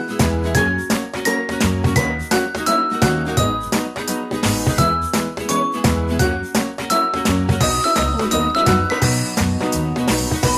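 Background music: a melody of short, bright, bell-like notes over a bass line and a steady beat.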